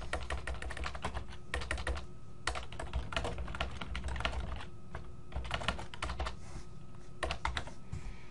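Typing on a computer keyboard: quick runs of keystrokes in several bursts with short pauses between them.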